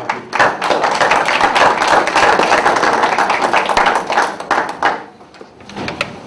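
A roomful of people applauding: a burst of many hands clapping that starts just after the start and dies away about five seconds in.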